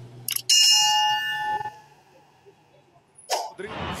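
Subscribe-button animation sound effect: a mouse click, then a bright bell ding that rings out and fades over about a second. A brief rush of noise comes near the end.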